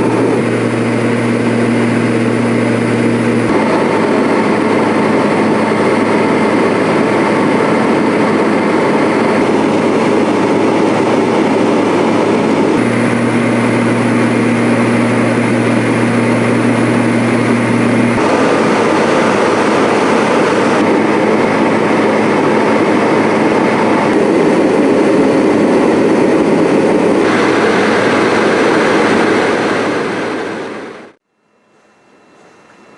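Steady, loud drone of an airliner's engines in flight, heard from inside the aircraft, with a low steady hum in two stretches and small sudden changes in the noise at several cuts.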